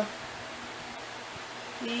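Steady background hiss with a faint hum underneath: room tone, with a woman's voice starting again near the end.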